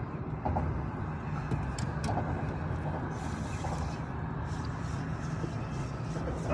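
Spinning reel being cranked, its gears and handle clicking softly as line is wound in, over a steady low rumble.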